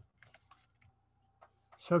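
A near-quiet pause broken by a few faint, scattered clicks in the first second. A man's speaking voice resumes right at the end.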